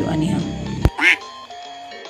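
Talk over background music breaks off with a sharp click just under a second in, followed by a short duck-quack sound effect that rises and falls in pitch. Quiet plucked-guitar background music carries on after it.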